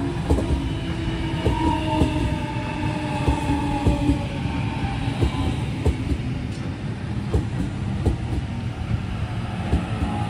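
Sydney Trains Waratah double-deck electric train passing close by: a steady loud rumble of wheels on rail, with sharp clicks as the wheels cross rail joints. A whine falls slightly in pitch over the first few seconds.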